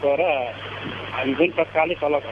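A man speaking, in two short stretches with a brief pause between, over a steady low hum.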